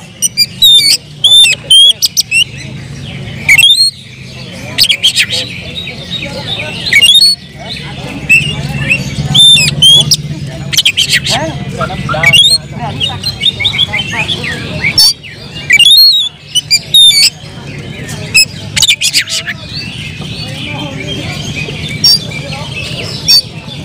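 Oriental magpie-robin (kacer) singing a loud, varied song of sharp whistled notes and rapid chattering phrases, delivered in bursts with short pauses. It is the excited, aggressive song of a bird worked up to fight, fanning its tail as it sings.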